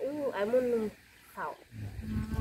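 A woman's voice singing a drawn-out phrase of a Dao-language song that ends about a second in, followed after a short pause by a brief rising vocal sound.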